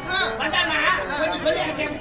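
Speech only: an actor speaking stage dialogue in a continuous stream, with no other sound standing out.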